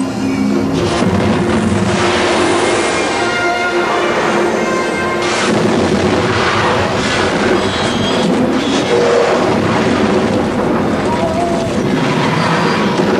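Film soundtrack: music playing over heavy rumbling and booming sound effects.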